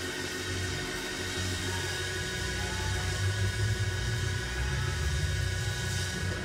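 Church band music under the sermon: low, sustained bass notes and held chords, slowly growing louder.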